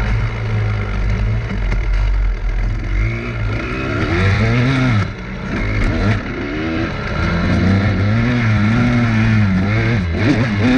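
Dirt bike engine under way, its pitch rising and falling as the throttle is opened and closed. It drops off briefly about five seconds in, then pulls again.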